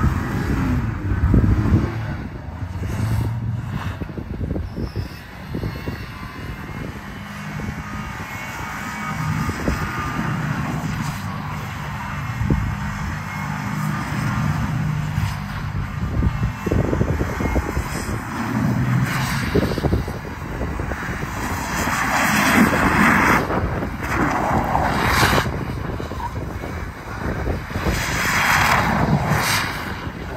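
Ford F-150 pickup's engine revving hard with its rear tyres spinning in snow while it does donuts, the engine note rising and falling as the truck circles. Several louder surges of tyre and snow-spray noise come in the second half.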